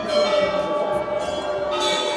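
Metal temple bells being rung, each strike's ringing tones overlapping the last, with a fresh strike at the start and another near the end.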